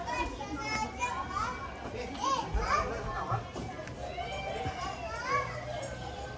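Children's voices calling and shouting at play, high-pitched and overlapping, with some people talking.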